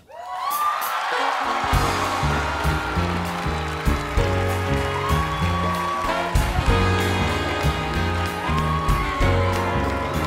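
Studio audience applause breaking out, joined about two seconds in by the house band playing upbeat walk-on music with a heavy bass line, carrying on steadily.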